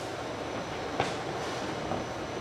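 Mateer Burt AU404 hot-glue wrap labeler running, a steady mechanical noise from its dual-belt container handling, with one sharp click about a second in.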